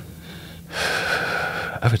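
A man draws one long audible breath, lasting about a second, in the pause before he speaks.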